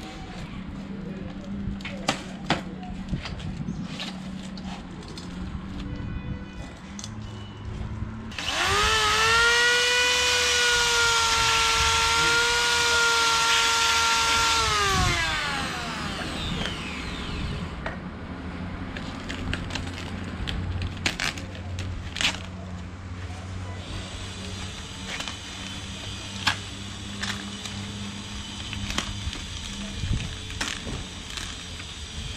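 An electric power tool's motor spins up about eight seconds in, runs with a steady whine for about six seconds, then winds down. Before and after it come scattered clicks and rustles of hands handling the unrolled reverse osmosis membrane sheets.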